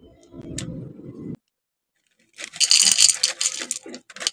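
Crunchy chocolate cereal squares poured from a foil-lined bag, clattering into a ceramic bowl in a dense run of sharp clicks in the second half. Before that, a brief rustle of the bag, then a sudden second of dead silence.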